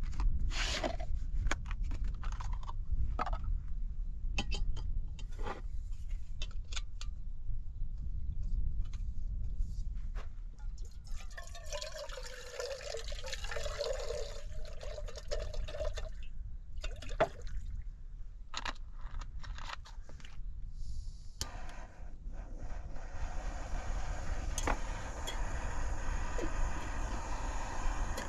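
Light knocks and clicks of camp cookware being handled, then water poured from a bottle into a small camp-stove pot, a few seconds long. In the last quarter a gas canister stove burner is lit and hisses steadily, heating the water to boil.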